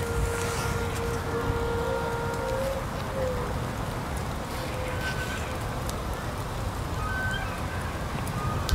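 Steady outdoor background noise: a low rumble with hiss. A faint held tone sounds over the first two and a half seconds, and a few brief faint tones come later.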